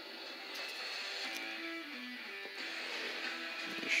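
Background music with guitar: a few held notes, some stepping down in pitch.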